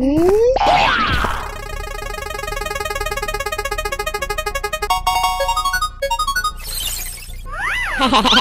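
Cartoon sound effects: a rising boing, then a fast run of ticking tones from a spinning prize wheel that slows down and stops. A brief hiss comes near the end.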